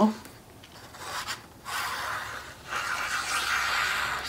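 Tip of a squeeze bottle of liquid glue dragging across patterned paper as glue lines are drawn: a soft, scratchy rubbing. It starts about a second in with a brief stroke, then runs on more steadily, with a short break partway through.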